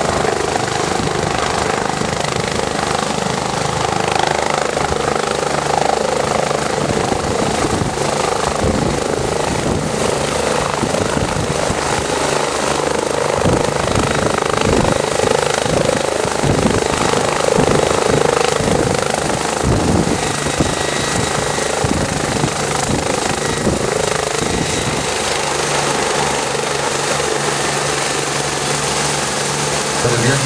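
Turbine air-ambulance helicopter (DRF BK 117 type) lifting off and hovering low, with its turbines and rotor running loud and steady and growing loudest around the middle, where a rapid low beating is heard.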